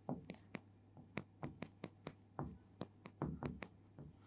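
Felt-tip marker writing a word on a whiteboard: a quick, irregular run of faint, short strokes and taps as each letter is drawn.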